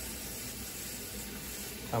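Steady hiss of running water.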